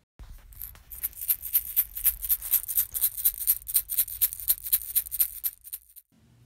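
Egg shaker shaken in a quick, even rhythm of about four strokes a second, over a steady low hum.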